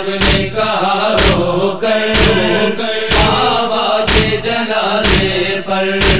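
Interlude of a noha lament: chanting voices over a steady low drone, with a heavy beat about once a second.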